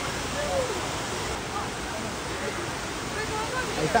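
Steady rush of water running down large water slides and churning into the splash pool, with people's voices over it and a shout near the end.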